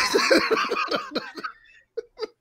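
Men laughing: a quick run of short "ha" pulses that dies away about a second and a half in.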